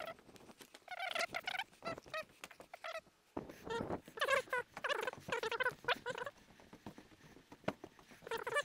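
Repeated high-pitched squeaky animal calls, coming in short clusters of quick chirps throughout.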